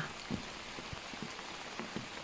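Light rain falling steadily, an even patter with scattered single drops ticking on nearby surfaces.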